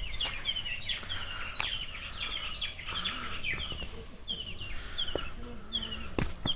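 Small birds chirping: a steady run of short, high, slurred chirps, about three a second, over a low outdoor rumble.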